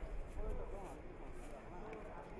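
Indistinct voices in the background, with no clear words.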